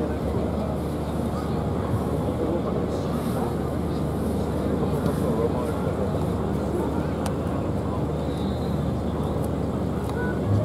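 Indistinct talking over a steady outdoor rumble, with no music playing.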